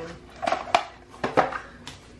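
Oracle cards being handled on a table: about five sharp clicks and taps as the cards are picked up and knocked together.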